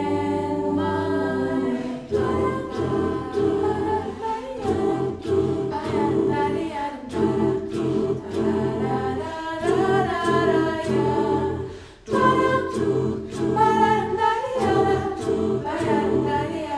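Mixed choir singing a cappella in close harmony: a held chord for about two seconds, then rhythmic chords sung in short repeated syllables, with a brief break about twelve seconds in.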